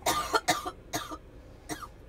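A person coughing: a quick run of several coughs, then a weaker one near the end.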